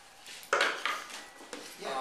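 Two sharp metallic clinks about half a second apart, each ringing briefly, then a fainter click, with a short voice sound starting near the end.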